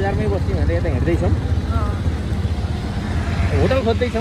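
Steady low engine and road rumble from a motorcycle being ridden along a rough street, with people talking over it.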